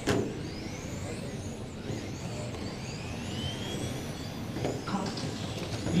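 Several electric radio-controlled touring cars running laps on an indoor carpet track, their motors whining in overlapping tones that rise and fall in pitch as the cars accelerate and brake. A sharp click sounds right at the start.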